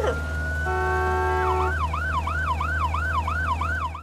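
A siren sounds with a steady low rumble beneath it: first one long high note climbing slowly for about a second and a half, then a fast warbling yelp that rises and falls about three to four times a second. It cuts off suddenly at the end.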